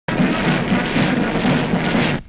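Military brass band playing a march, heard as a dense, noisy, muddy sound on an old film soundtrack.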